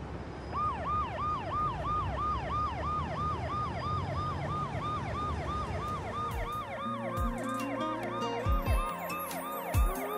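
Ambulance siren in a fast yelp, each cycle falling in pitch, about two and a half cycles a second, over a low street hum. About six seconds in, slow music with deep bass notes comes in under the siren.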